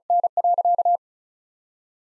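Morse code sent at 35 words per minute: a single steady beep keyed on and off in quick dits and dahs, stopping about a second in.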